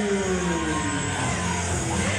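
Rock music with electric guitar playing loudly through the hall, typical of a wrestler's entrance music. A long pitched slide falls steadily in pitch and ends about a second in.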